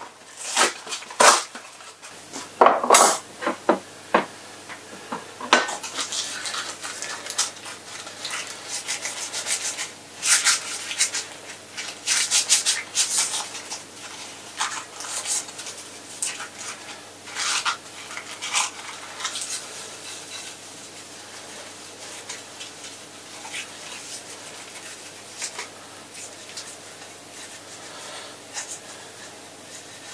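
A few sharp knocks and clatters of a dish and utensils in the first few seconds, then fingers rubbing margarine around the inside of a glass pie dish to grease it, in short repeated strokes that thin out and grow fainter in the last third.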